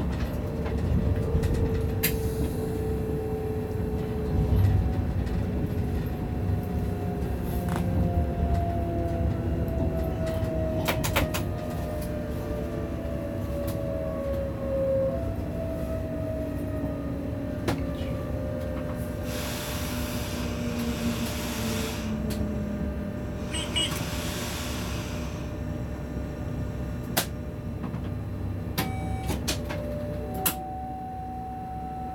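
Inside the cab of an ÖBB class 1016 (Siemens Taurus) electric locomotive on the move: a low steady rumble of the running gear, with whining tones from the drive that slide slowly down in pitch, and scattered sharp clicks. Two bursts of hiss come about two-thirds of the way through, and a steady tone starts near the end.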